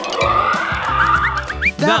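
A rasping, growling dinosaur-roar sound effect over background music, followed by a few short rising chirps near the end.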